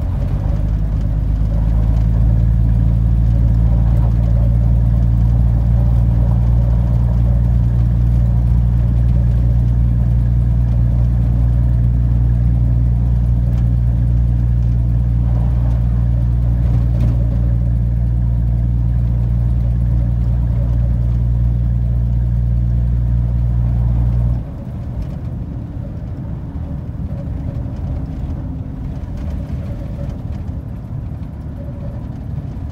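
1982 Ford F-150 engine and drivetrain droning steadily inside the cab while driving along a snow-covered road. About 24 seconds in, the low drone drops away suddenly and the truck runs on more quietly.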